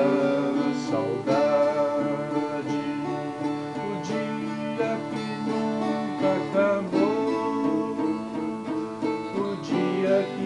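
Twelve-string acoustic guitar strummed in a steady rhythm, with strong accented strokes about every second and a half and the chords ringing between them.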